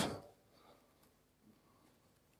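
A man's speech trailing off in the first moment, then near silence: faint room tone.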